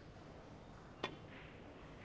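One sharp click about a second in: a pool cue's tip striking the cue ball for a two-rail kick shot, against faint hall background.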